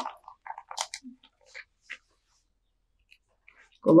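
Clear plastic bag crinkling in short, scattered rustles as a fresh face mask is taken out of it, dying away about two seconds in.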